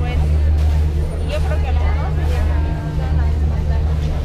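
Crowd chatter, several people talking at once, over a steady loud low rumble.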